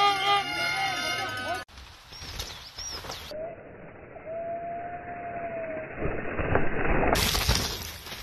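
Several horns blaring together at different pitches, cut off abruptly under two seconds in. Then quieter trail noise from a mountain bike, with a run of clattering knocks and a laugh near the end.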